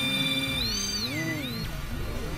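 Experimental synthesizer drone: held electronic tones that, about half a second in, bend down and back up in a slow wavering pitch glide, then settle lower and quieter.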